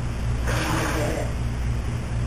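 Steady low hum, with a short burst of rustling noise about half a second in that lasts under a second.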